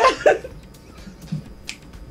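A man's laughing voice trailing off in the first half second, then a lull broken by one short, sharp click near the end.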